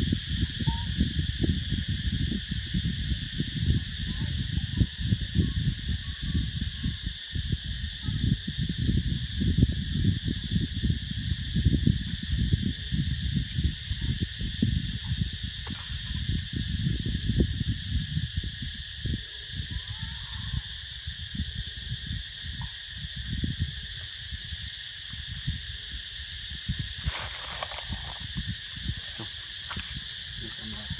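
A steady high-pitched drone of insects calling, with irregular low rumbling wind buffeting the microphone that eases off after about 24 seconds.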